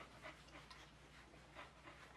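Very faint, quick panting from a boxer dog, about three breaths a second.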